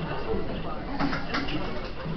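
Background talk from people in a room, with a couple of short, sharp snips of scissors cutting paper about a second in.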